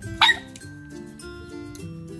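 Background music with held notes, cut across about a quarter second in by a single short, loud dog bark.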